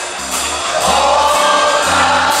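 Live blues band playing, with electric guitars, bass guitar and drums, and several voices singing sustained notes together.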